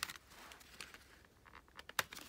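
A plastic CD jewel case being handled and pried open: faint taps and rubbing of fingers on plastic, with one sharp click near the end.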